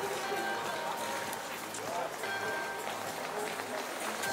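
Outdoor ice-rink ambience: a crowd of skaters talking and calling out, with music playing in the background and the scrape and click of skates on the ice.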